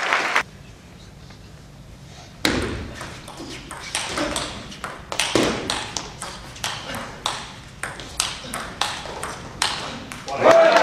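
Table tennis ball in a long, fast rally: sharp clicks of the celluloid ball on the rubber bats and the table, about two a second, starting with the serve about two and a half seconds in and running to near the end. At the very start a burst of audience noise cuts off, leaving a short lull before the serve.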